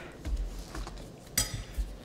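Quiet eating sounds of instant noodles being eaten with chopsticks: soft low thuds and one sharp click about one and a half seconds in.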